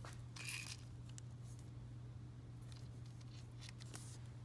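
Faint rustle and a few light clicks from small items being handled on a tabletop, over a steady low hum.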